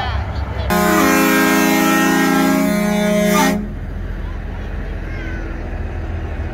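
Semi truck's air horn sounding one long blast of about three seconds, starting about a second in: a chord of several low, steady tones. A low engine rumble runs underneath.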